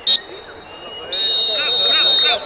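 Referee's whistle ending the first half of a football match: a short blast just after the start, then a long steady high-pitched blast from about a second in.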